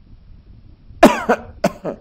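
A man coughing: a quick run of about four coughs starting about a second in.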